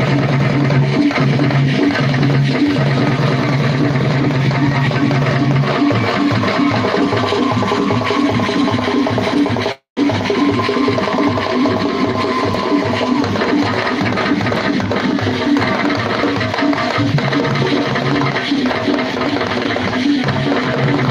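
Traditional drum ensemble playing a fast, steady, repeating rhythm for a dance. The sound cuts out completely for a moment about ten seconds in, then the drumming carries on.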